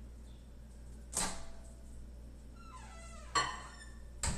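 Kitchen handling sounds: a sharp knock about a second in, then a click with a brief ringing tone near the end, as cups and appliances are handled at the counter and microwave.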